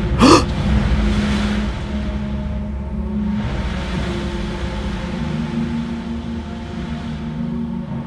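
Ominous background music of held low drone notes, overlaid by two long swells of rushing, hiss-like noise, with a brief rising sound right at the start.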